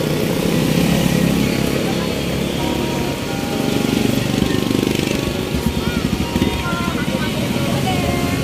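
Street traffic with a motorcycle engine running close by, a steady low rumble that takes on a rapid pulsing beat between about five and seven seconds in.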